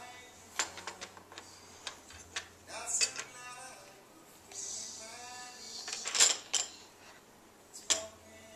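Small cups, plates and teapot of a toy tea set being handled, giving a string of light clinks and knocks, the loudest about six seconds in. A toddler's wordless babbling sounds come in between.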